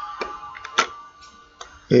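Plastic pill bottles being handled on a wooden desk: three light, sharp clicks and taps as a bottle is picked up and moved, over a steady faint hum.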